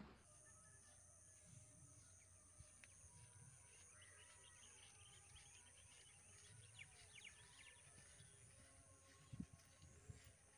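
Near silence: faint rural outdoor ambience with a few faint bird chirps in the middle, and a couple of soft thumps near the end.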